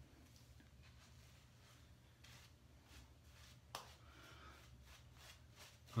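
Near silence, with faint soft rustles of a shaving brush working lather on the face and one soft tap a little after halfway.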